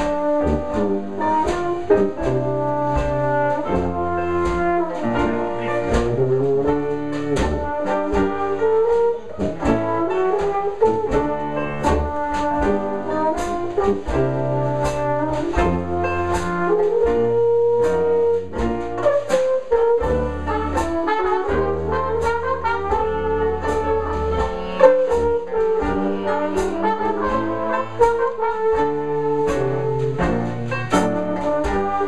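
Traditional New Orleans jazz band playing together: trumpet, cornet, French horn and clarinet weaving melody lines over helicon (tuba) bass notes and a steady banjo and drum beat.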